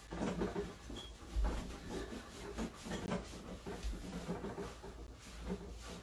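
A towel being rubbed over a damp dog's coat: soft, irregular rustling strokes, faint, with the dog panting.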